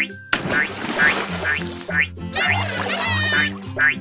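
Children's background music with a cartoon duck-quack sound effect, a run of squawky calls about two and a half seconds in, after a short noisy burst near the start.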